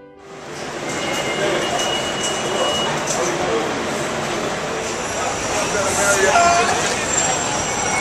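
Busy subway station ambience: people's voices over a steady din of station and train noise.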